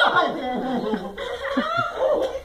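People laughing and chuckling, in drawn-out voiced laughs that rise and fall in pitch.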